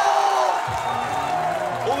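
Football crowd chanting and cheering together after a goal. The loud sung chant eases off about half a second in, leaving steadier crowd noise.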